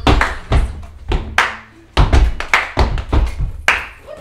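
Hand claps and feet stomping on a wooden floor in a quick, uneven rhythm, two or three sharp strikes a second, each with a heavy thump under it.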